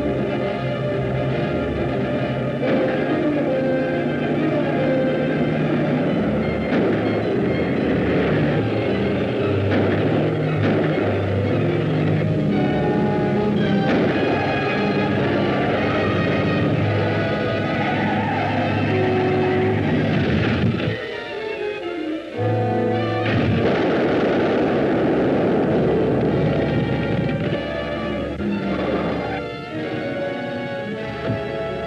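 Orchestral film-score chase music, continuous and fairly loud, with shifting chords and a brief drop about two-thirds of the way through.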